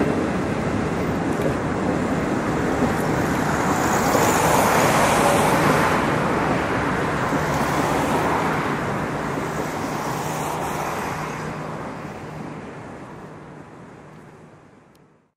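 Passenger train coaches rolling across a rail bridge: a steady rumble of wheels on rails that swells a few seconds in and then fades away as the end of the train passes.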